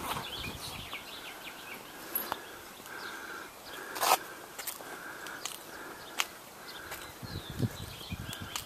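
Quiet outdoor ambience with faint distant bird calls and a few short knocks and footsteps from a person walking with a handheld camcorder, the sharpest knock about four seconds in.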